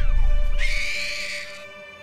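A baby gives a high-pitched cry lasting about a second, while backing music fades out underneath.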